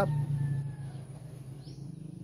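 Outdoor morning ambience with one short, high bird chirp near the end, over a low steady hum that fades out about halfway through.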